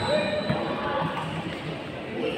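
Echoing voices and court noise in a large indoor badminton hall, with one sharp knock about half a second in.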